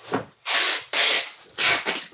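Packing tape being pulled off a handheld tape dispenser in several short, quick pulls, each a harsh rasping burst.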